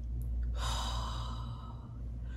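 A woman taking one slow, deliberate deep breath, heard as a long airy rush that starts about half a second in and lasts just over a second.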